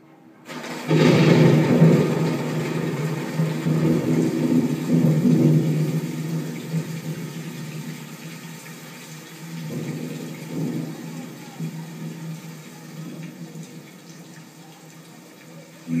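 Film soundtrack of a rainstorm played over classroom speakers. A loud rumble, like thunder, breaks in about a second in and fades away over several seconds under a wash of rain. A second, smaller rumble comes around ten seconds in.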